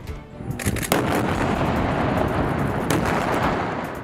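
An explosion from an airstrike: a sudden blast a little under a second in, followed by a few seconds of steady, dense rumbling noise with occasional sharp cracks.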